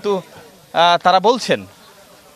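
A man's voice: one short spoken phrase, a little under a second long, starting about three-quarters of a second in and dropping in pitch at its end, over a faint steady background hiss.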